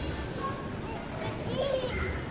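Children playing and calling out in a steady din of young voices, with one child's brief high-pitched cry shortly before the end.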